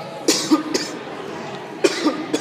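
A person's short, sharp cough-like bursts: three quick ones in the first second and one more near the end.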